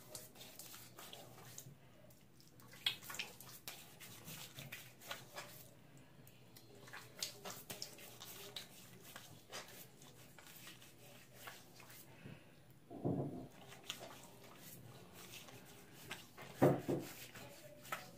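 Bloom water from a shaving brush being splashed onto the face by hand over a sink: many faint, irregular splashes and drips. Two short, louder low sounds stand out, about two-thirds of the way through and again near the end.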